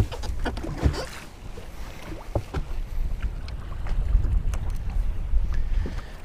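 Wind buffeting the microphone aboard a small fishing boat on choppy water, a steady low rumble, with a few scattered light knocks.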